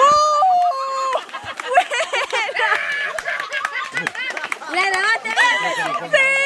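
A group of people yelling, shrieking and laughing together, with long high-pitched cries at the start and again near the end.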